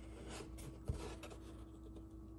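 Faint rubbing and scraping of fingers on a cardboard toy box as it is turned in the hand, with one small tap about a second in.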